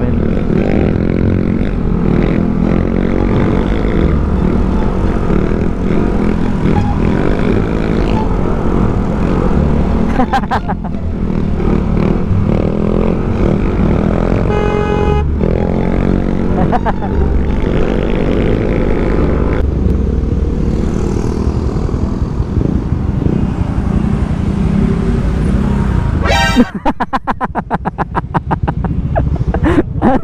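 Motor scooter engine running at riding speed, its pitch rising and falling with the throttle, over wind noise on an onboard camera. Near the end the riding noise drops to a quieter, quick, regular pulsing.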